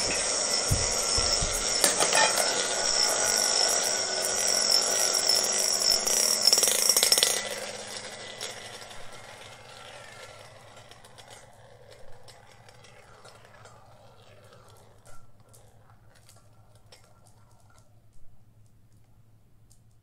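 Marbles swirling around inside several stainless steel salad bowls: a continuous rolling rattle with the bowls ringing at high pitch. It dies away after about seven or eight seconds as the marbles slow, leaving three faint clinks of marbles settling.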